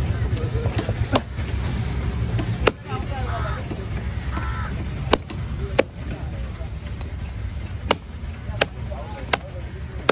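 Steel cleaver chopping through a trevally head on a wooden log chopping block: a series of sharp, unevenly spaced chops, about seven in all.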